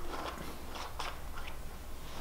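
Plastic contact lens case having its screw caps twisted open by hand: a few faint, scattered small clicks and scrapes.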